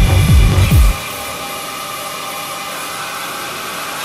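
Techno in a club DJ set: the fast kick drum cuts out about a second in, leaving a steady hissing synth drone with held high tones as the track goes into a breakdown.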